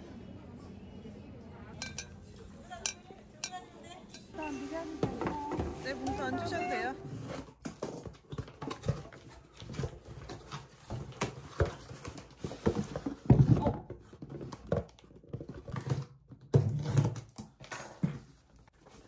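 A voice is heard briefly, then cardboard fruit boxes are handled and opened: irregular scraping, flapping and knocking of cardboard, with a few louder thumps as the boxes are shifted.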